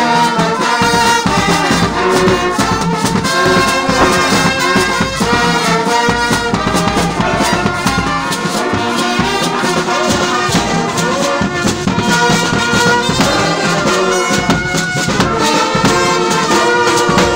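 A brass band playing a tune, led by trombones with euphonium, the notes moving together over a steady beat.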